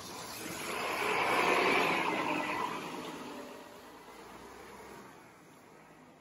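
A road vehicle driving past on the street, its sound swelling over the first second or two and then fading away over the next few seconds.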